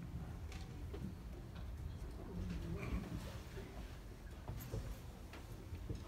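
Quiet hall noise between songs: a low rumble with faint murmuring voices and a few small clicks and knocks, with no music playing.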